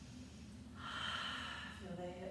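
A woman's audible breath, a single breath about a second long beginning partway in, taken while holding a seated yoga twist.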